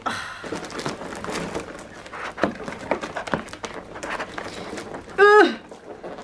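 Cardboard scraping and rustling with small knocks as a tight-fitting boxed kit is worked out of a cardboard shipping box, then a brief vocal sound about five seconds in.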